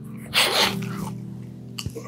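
A man's short, sharp burst of breath about a third of a second in, over background music with low sustained tones.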